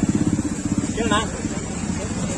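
Motorcycle engine idling, a steady low running sound, with one short spoken word about a second in.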